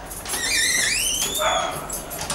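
Door hinges creaking as a door is pushed open: one squeak of about a second and a half that wavers and climbs in pitch.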